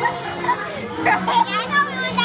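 A crowd of children chattering and shouting over background music, with high-pitched shrieks in the second half.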